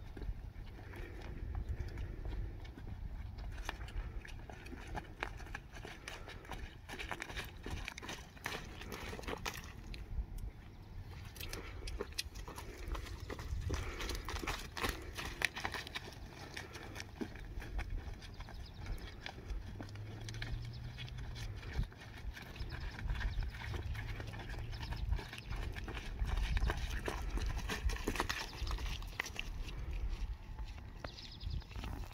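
Hoofbeats of a horse walking on soft wood-chip arena footing, with a person's footsteps alongside, as the horse is led at a walk.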